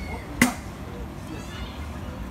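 A single sharp knock about half a second in, the loudest sound, over faint street chatter and voices.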